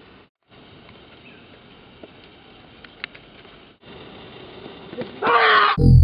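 Faint outdoor background noise with a couple of small clicks, then about five seconds in a man lets out a loud scream. Music with a heavy bass comes in just at the end.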